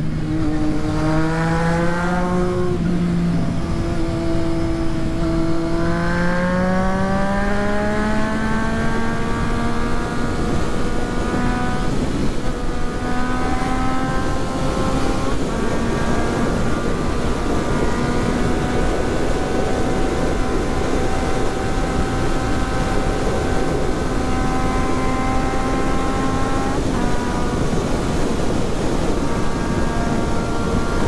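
Triumph Street Triple 675's inline three-cylinder engine under way at highway speed: its pitch rises over the first ten seconds with a short dip between, then holds steady at cruise, with a brief dip near the end. Heavy wind noise runs under it.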